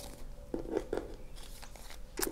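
Printed cards being gathered and squared into a stack by hand: a few faint taps and rustles of card against card, mostly about half a second to a second in.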